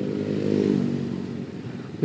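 Motorcycle engine running at low speed in slow traffic: a steady hum that swells slightly about half a second in, then fades as the rider eases off.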